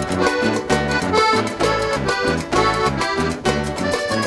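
Instrumental passage of accordion-led Argentine dance music: the accordion plays the melody over a steady, evenly repeating bass beat.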